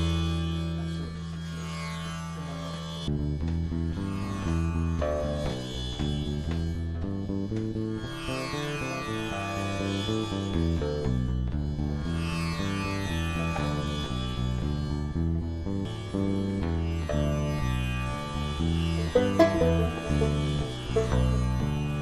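Acoustic drone music: a steady low drone, with plucked bass notes stepping about from about three seconds in. High, whistle-like overtones glide up and down above it, and sharper plucked notes enter near the end.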